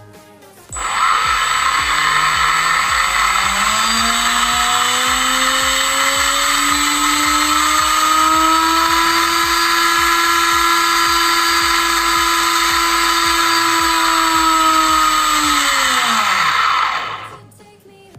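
Rewound 2200 KV brushless outrunner motor running free with no load: it starts suddenly about a second in, its whine rising in pitch for several seconds as it speeds up, holding steady at full speed, then falling away as it spins down and stops about a second before the end.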